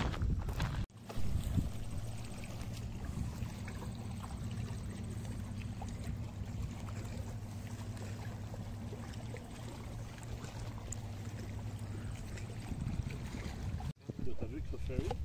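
A steady low drone with a faint hum in it, over outdoor wind and water noise; the drone eases off near the end.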